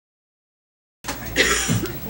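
Dead silence for the first second, then a room with a low steady hum comes in and a person coughs once, about a second and a half in.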